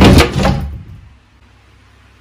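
A wardrobe door is swung open with one loud clatter right at the start, lasting about half a second and fading quickly. The wardrobe is an old, battered one.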